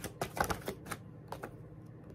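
A deck of tarot cards being shuffled by hand: a quick run of card clicks and slaps, about five a second, that stops after under a second, with two more clicks shortly after.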